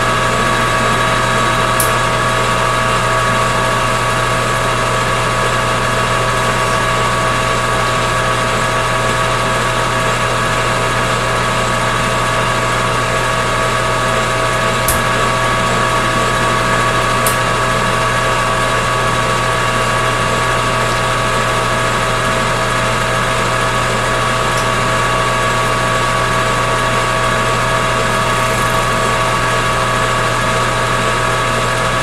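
Metal lathe running steadily under power during single-point threading passes on stainless steel, a constant motor hum with a steady gear whine over it. A few faint clicks stand out a couple of times.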